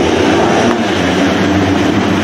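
A full gate of 250cc four-stroke motocross bikes revving hard together at the race start, many engines at once in a loud, steady drone.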